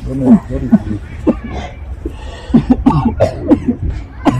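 A person coughing repeatedly, a run of short, sharp coughs in quick succession.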